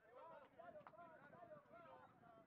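Faint, distant raised voices of players and spectators calling out across the pitch, with one sharp click a little under a second in.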